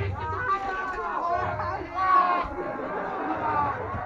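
Indistinct chatter of several voices in the audience, with no clear words.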